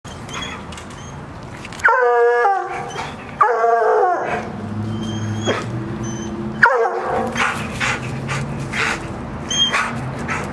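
Hound baying: three loud, drawn-out howls, each starting high and sliding down in pitch, about two seconds in, about three and a half seconds in, and again near seven seconds.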